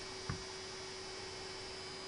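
Faint steady hum with a thin high whine from a small DC motor running off a home-built high-frequency oscillator circuit, with one soft low thump about a third of a second in.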